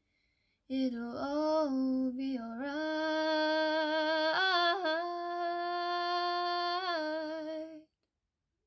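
A woman singing unaccompanied, a wordless phrase that moves through a few notes and then settles into one long held note, stopping shortly before the end.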